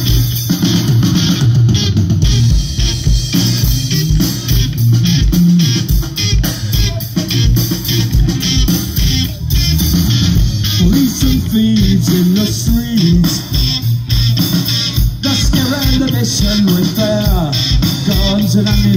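Live punk rock band playing loud through a PA: distorted electric guitar, electric bass and drum kit, with a steady kick-drum beat and a moving bass line.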